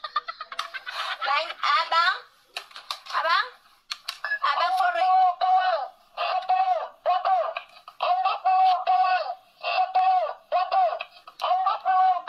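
A woman's voice laughing and talking, then from about four seconds in a high-pitched voice repeating the same short sung call about once a second, in a steady chant-like rhythm.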